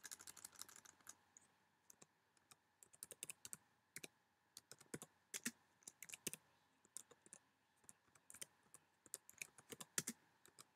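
Faint keystrokes on a computer keyboard: irregular typing, with a quick run of presses in the first second.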